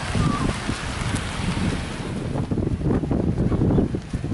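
Wind buffeting the camera's microphone: a gusty low rumble that grows stronger in the second half.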